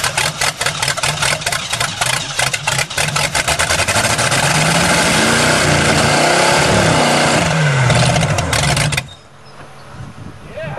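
A previously seized, rusty timing-belt engine primed with gas and cranked on its starter, turning over in uneven pulses, then catching and running briefly with its pitch rising and falling, before stopping suddenly about nine seconds in. With no fuel system it runs only on the gas poured in as prime.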